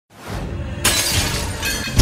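Intro sound effect over music: a low rumble fades in, then glass shatters with a sudden bright crash just under a second in, its ringing fragments trailing on.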